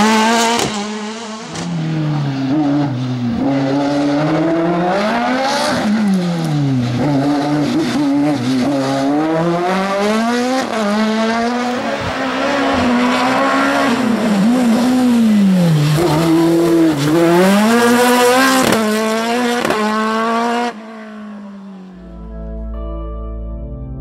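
Osella PA9/90 sports-prototype race car engine at high revs, its pitch climbing and dropping again and again as the driver accelerates and brakes through the slalom chicanes, with tyres squealing. The engine sound cuts off suddenly near the end.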